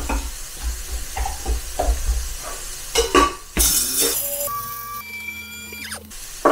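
Clicks and handling noise as an electric blade spice grinder holding whole cumin seeds and peppercorns is loaded and closed. About three and a half seconds in a loud burst of noise starts, and the grinder's motor then runs with a steady whine, grinding the spices.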